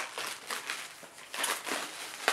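Plastic wrapping being crinkled and torn off a comic book by hand, in several short rustling bursts with a sharp crackle at the start.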